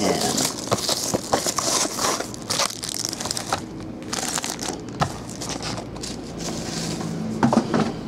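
Plastic-wrapped trading card packs and their boxes being handled and stacked on a table: crinkling and crackling of the wrappers, with small knocks as they are set down.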